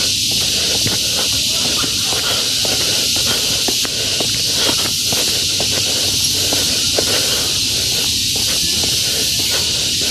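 Loud, steady high-pitched drone of insects in the forest trees, unbroken throughout, with irregular footsteps on concrete steps underneath.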